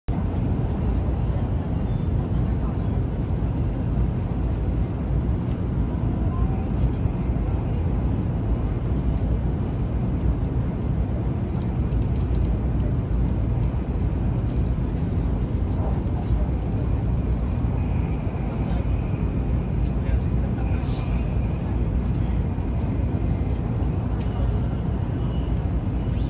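Cabin noise inside a Taiwan High Speed Rail 700T train car running between stations: a steady low rumble.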